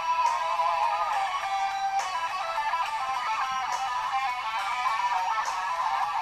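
Guitar solo in a rock song: a lead guitar plays a wavering melodic line over the backing track, with no singing.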